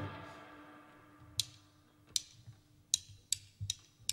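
An electric guitar chord rings out and fades over the first second. Then drumsticks click together about four times, evenly spaced under a second apart: a count-in to the next song.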